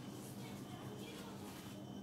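Faint papery rustle of a thin sheet of yufka (phyllo dough) being laid over the filling and smoothed by hand, over a steady low hum.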